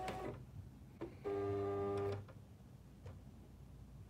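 Silhouette Cameo 3 vinyl cutter feeding material: a click, then its feed motor runs for about a second with a steady whine as the rollers advance the sheet, and stops.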